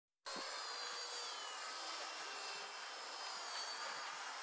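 V120D02S micro RC helicopter in flight: a steady, high-pitched motor and rotor whine over a dense hiss, its pitch dipping slightly a second or so in.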